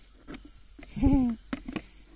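A short laugh about a second in, with a few faint clicks before and after it.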